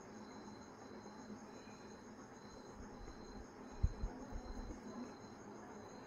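Faint, steady high-pitched chirping that pulses evenly in the background, with a few soft low thumps about four seconds in.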